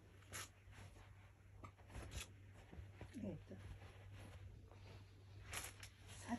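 Near silence: room tone with a steady low hum, a few soft clicks and rustles, and a brief faint vocal sound about three seconds in.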